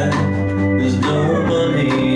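Live band playing a country-rock song: acoustic guitar strumming over electric bass and drums, with regular drum and cymbal hits about twice a second, in an instrumental stretch between sung lines.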